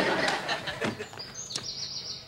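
Duct tape being pulled off the roll, with a short, high, warbling squeal about a second in that lasts under a second.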